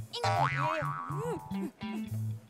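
Playful comedy background music over a low plucked bass line that repeats in short even notes, with springy sliding sound effects that swoop up and down in the first second and a half.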